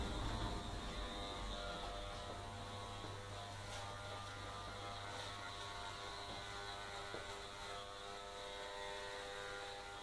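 Electric hair clippers running with a steady buzz while trimming short hair at the back of the head.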